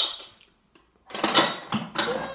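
Dishes and metal cutlery clattering together in a kitchen: a ringing clank at the start, then a louder burst of clinks and knocks in the second half.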